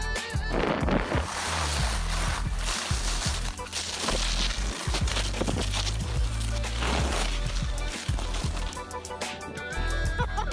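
Rushing wind on the microphone and the hiss of skis sliding over snow from a camera carried down a ski slope, with background music underneath.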